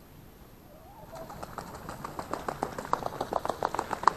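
A group of young swans taking off from the water: wingbeats and feet slapping the surface in a rapid rhythm that starts about a second in and grows louder.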